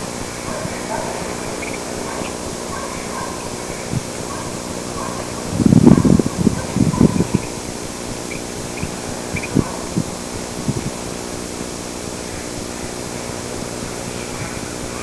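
A steady hum under faint short chirps, broken by a burst of low, irregular thuds a little over five seconds in, the loudest sound here. A few single soft knocks follow.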